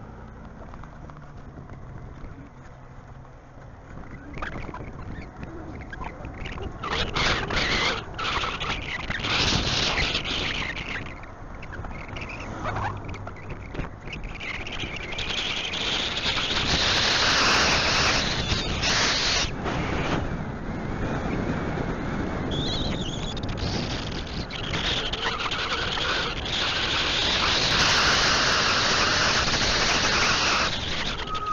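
Wind buffeting a handheld camera's microphone on a moving bike: an irregular rushing noise that grows louder about four seconds in and is strongest in the second half.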